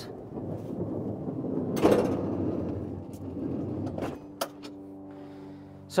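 Pickup truck-bed slide-out tray rolling on its rails, with a sharp knock about two seconds in. It is followed by a couple of clicks and a steady low hum.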